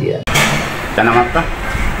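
Steady background noise, a low rumble with hiss, under a few short snatches of a voice.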